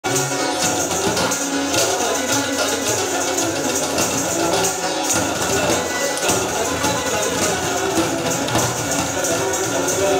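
Live band playing Indian fusion music: sitar, electric guitar and keyboard over a steady percussion beat.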